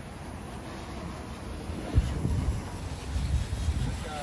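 Wind buffeting the microphone: low, irregular rumbling gusts that grow stronger about two seconds in.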